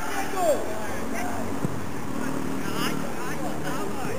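People shouting on a football pitch, one call falling in pitch near the start, with scattered shorter calls over a steady open-air hiss. A single sharp knock comes about a second and a half in.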